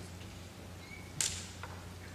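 Quiet room tone of a large hall with a steady low electrical hum, broken by one brief sharp swish a little over a second in.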